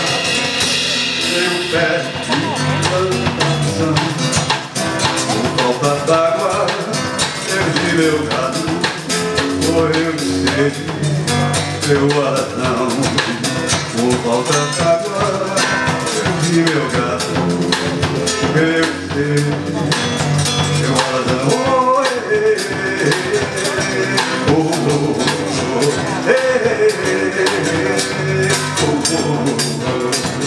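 Live band playing a baião on acoustic guitar and electric bass, over a steady percussion beat.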